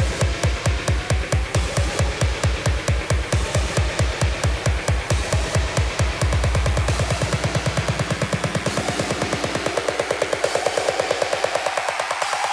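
Electronic dance music played loud over a club sound system: a steady four-on-the-floor kick drum for about six seconds. The kick then gives way to a quickening roll and a rising tone, a build-up with the bass dropped out.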